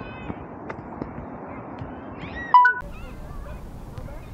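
Open-air background with faint distant voices. About two and a half seconds in comes one short, loud, high-pitched call that steps up in pitch and is cut off abruptly.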